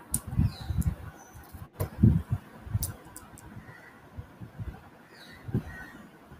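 Soft, irregular low bumps and rustles with a few faint clicks, picked up by an open microphone on a video call. The loudest bump comes about two seconds in.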